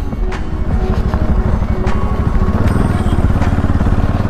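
Bajaj Pulsar NS200's single-cylinder engine running under load as the motorcycle rides over a rough, rutted dirt road, its firing pulses growing louder about halfway through.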